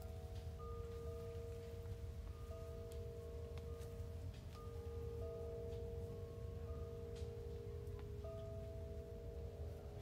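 Chimes ringing softly: several long, overlapping tones at different pitches, each starting at its own irregular moment, over a low steady rumble.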